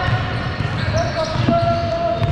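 Basketball hall ambience: indistinct voices across the court and a basketball bouncing now and then on the hardwood floor of a large hall.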